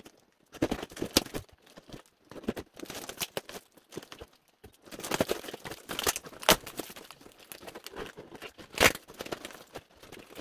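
Plastic wrap and packing tape being torn and cardboard ripped by hand at the end of a large shipping box: irregular crinkling and tearing with sharp rips, the loudest about two-thirds of the way in and near the end.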